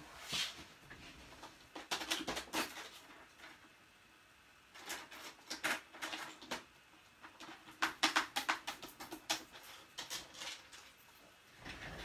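Cardstock being scored and handled on the work table: several clusters of short scrapes and taps with quiet gaps between them.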